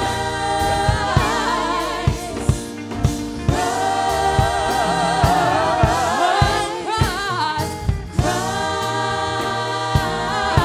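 Gospel worship singers, several women's voices together, sing a slow song over a band, holding long notes with vibrato. Bass and regular drum hits run underneath.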